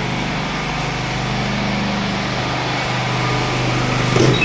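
A small engine running steadily, a low droning hum with no change in speed.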